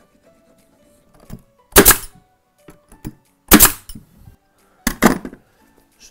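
Pneumatic nail gun firing three times, about a second and a half apart, pinning hardwood cladding boards into place, over faint background music.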